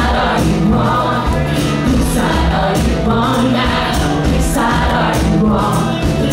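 Live band music: a female lead vocal with backing vocals, over acoustic guitar, drums and upright bass.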